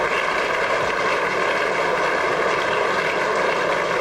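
Audience applauding steadily as the frame is conceded and ends.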